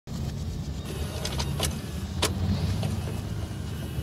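Steady low rumble of a car's engine and tyres heard from inside the cabin while driving, with a few short sharp clicks or knocks in the first half.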